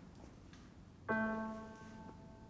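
MIDI piano playback of a solo piano piece: after about a second of quiet, one piano chord strikes and rings, slowly fading. The mechanically exact, unexpressive rendering is what the piece sounds like as MIDI.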